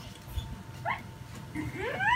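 A high-pitched cry that rises steadily in pitch, starting about a second and a half in and getting louder, after a short faint rising chirp near the middle; faint handling of a phone otherwise.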